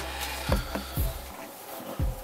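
Handling noise of a sneaker being picked up and turned over: a few soft knocks and rubbing of the shoe against hands and the display surface.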